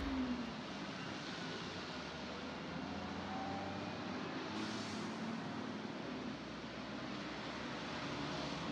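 Traffic on a rain-wet city street: a steady hiss of tyres on wet asphalt under a low engine hum, with a brighter hiss swelling briefly about halfway through as a vehicle passes close.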